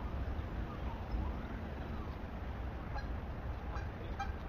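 Outdoor background noise: a steady low rumble, with faint higher calls now and then.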